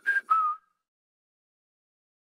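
A person whistling a short tune, its last two brief notes falling in the first half second.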